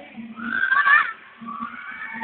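A shrill, wavering squeal from a person's voice, about half a second long and loudest near the middle, over dance music.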